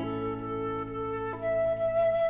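Concert flute holding long notes over a nylon-string classical guitar chord that is still ringing. A little past halfway the flute moves up to a higher, louder note and holds it.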